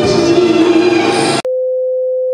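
A young woman singing into a microphone with music, cut off abruptly about one and a half seconds in. A steady single-pitch test-card tone follows.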